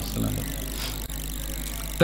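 Steady low hum with background noise through the public-address system, with the faint tail of a man's amplified voice at the start.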